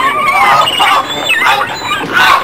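A man screaming in high, wavering shrieks, again and again.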